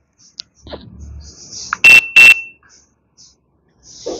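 Motoscan Tab diagnostic tablet giving two short, loud, high-pitched beeps about a third of a second apart: its alert as a notification box opens on the screen.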